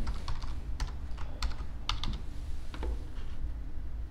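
Computer keyboard typing: about eight separate, unhurried keystrokes, irregularly spaced, entering a web address.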